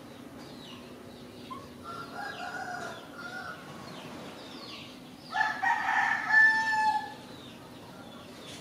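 A rooster crowing twice: a fainter crow about two seconds in, then a louder, longer crow from about five and a half seconds in.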